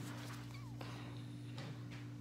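A steady low hum with a few faint light clicks over it.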